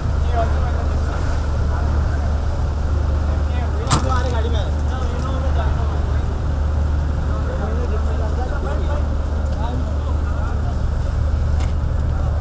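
A car engine running with a steady low hum, beneath a crowd's indistinct chatter, with one sharp click about four seconds in.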